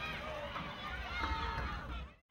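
Several voices calling and talking over one another, none clear enough to make out, over a steady low rumble.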